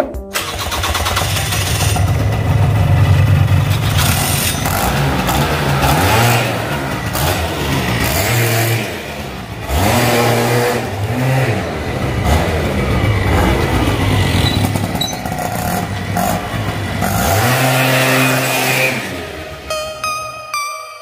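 Suzuki Address V100's two-stroke single-cylinder engine started and run, revved up and down several times, the pitch rising and falling with each blip. The drive is freshly serviced with new 9 g and 10 g roller weights.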